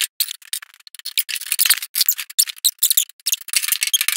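Ratchet wrench clicking in quick, uneven runs as a bolt is tightened.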